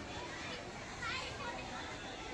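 Young people's voices shouting and chattering in the background, with one higher-pitched call standing out about a second in.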